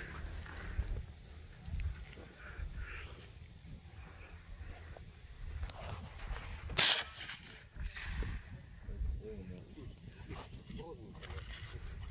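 A single sharp rifle shot about two-thirds of the way through, over a low rumble of wind on the microphone.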